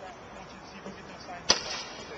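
A single sharp knock about one and a half seconds in, with a short tail after it, over faint voices.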